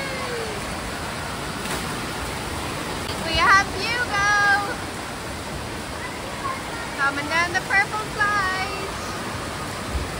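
Steady rush of water running down a water slide and splashing into its run-out, in an indoor water park. Children's voices call out twice, about three and a half seconds in and again about seven to eight seconds in.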